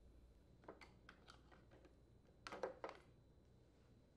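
Near silence with faint plastic clicks and light knocks as the air filter housing is worked off the breather tube: a scatter of small clicks, then a few slightly louder ones about two and a half seconds in.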